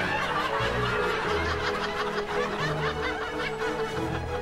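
Light background music with a laugh track of chuckling and snickering over it.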